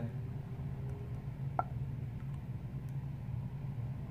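Faint handling of a glass e-liquid dropper and bottle, small clicks and one brief squeak about one and a half seconds in, over a steady low room hum.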